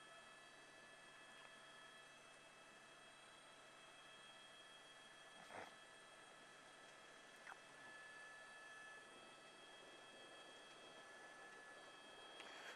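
Near silence: a faint steady electronic hum in the line, with a brief faint click about halfway through and a smaller one a couple of seconds later.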